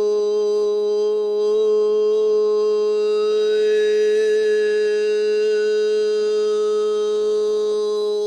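A man's voice holding one long, steady tone as sound-healing overtone toning. About three seconds in, a higher overtone rings out above the held note and shifts in pitch before fading back.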